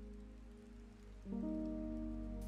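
Soft, sustained ambient music with a light rain sound underneath. The music fades low, then a new chord comes in about a second and a quarter in.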